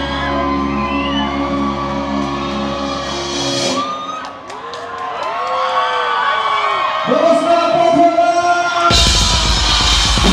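A rock band's held final chord rings out with bass and cuts off abruptly about three and a half seconds in. Voices then whoop and yell, including one long held shout, and a loud crash of drums and cymbals comes near the end.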